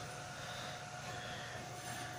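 Steady background hum and hiss with a thin, constant whine, and no distinct event.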